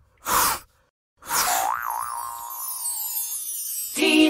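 Cartoon-style sound effects for an animated logo: a short burst of noise, then about a second in a springy boing whose tone wobbles and then holds while a high sweep falls away.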